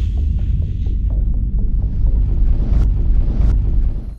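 Logo-reveal sound effect of a flame streak: a loud, deep, steady fire rumble with scattered crackles through it, cutting off suddenly at the end.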